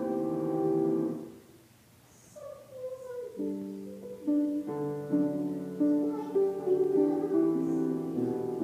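Live piano accompaniment playing held chords that die away about a second in, leaving a short lull, then starting again with a new phrase of chords and single notes about three seconds in.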